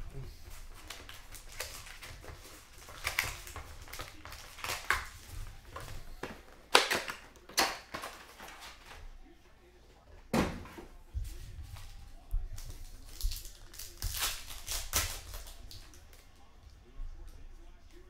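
Hands unpacking a cardboard trading-card box and opening a card pack: scattered crinkles, rustles and taps of paper wrappers, cardboard and cards. The loudest come about a third of the way in and again just past halfway.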